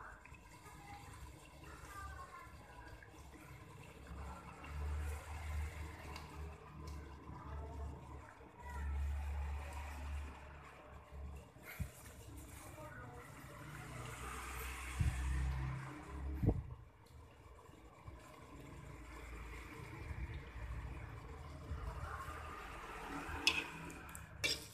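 Chili sauce with octopus and squid simmering in a covered pan, faint bubbling under the lid, with patches of low rumble. A sharp click near the end.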